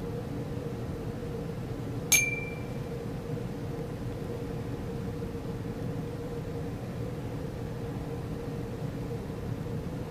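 Laboratory glassware clinking once, sharply, about two seconds in, with a brief clear ring that dies away quickly. A steady low hum runs underneath.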